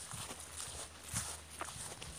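A person walking: a few soft footsteps on the ground, faint and irregular.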